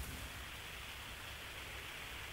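Faint steady hiss of an open telephone line in a short pause between speakers, with no other event.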